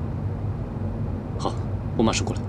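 Steady low rumble inside a car's cabin, with one short vocal sound, like a brief grunt or murmur, about one and a half seconds in.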